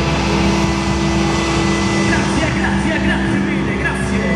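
A live rock band's electric guitar and bass holding a steady, droning chord, with voices shouting over it and a few short rising whistle-like calls in the second half.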